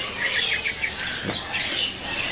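Caged songbirds chirping: a quick run of about five short, high chirps in the first second, with other thin calls overlapping.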